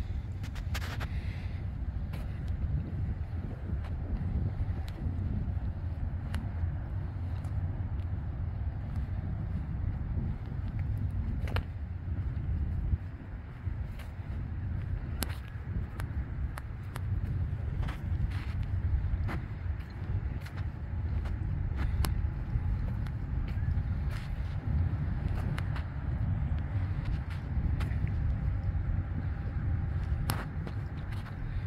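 Steady low outdoor rumble that flutters in level, with scattered light clicks over it.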